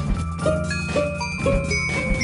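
Upbeat jingle music for a TV programme bumper: short, bright pitched notes about every half second over a steady bass line.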